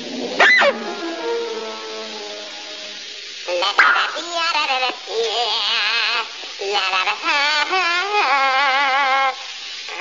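Cartoon soundtrack: after a quick up-and-down sweep, a short run of falling orchestral notes, then a high voice warbling a wordless tune with heavy vibrato, a character singing in the shower.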